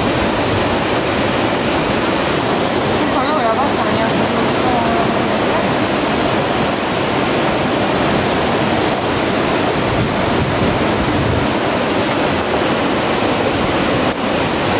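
River water rushing steadily through a concrete channel, a loud, unbroken rush of falling and churning water.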